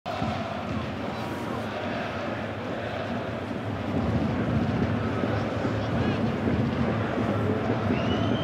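Football stadium crowd noise: a steady din of many supporters' voices, growing louder about halfway through.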